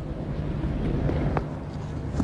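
Steady open-air ground ambience picked up by the broadcast's field microphones: an even background noise over a low hum, with a faint tick about a second and a half in.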